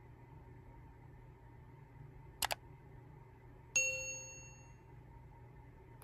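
Subscribe-button overlay sound effect: a short click about two and a half seconds in, then a bright bell-like ding that rings out and fades over about a second.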